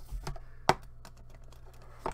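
Light clicks and taps of a cardboard trading-card box being handled, with one sharp click about two-thirds of a second in.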